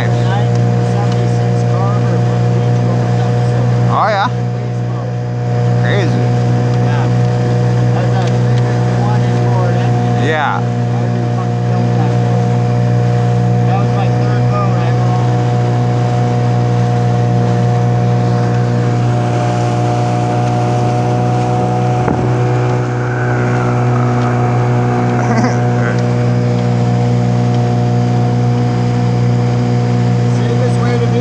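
A small boat's outboard motor running steadily at cruising speed, a loud constant engine drone.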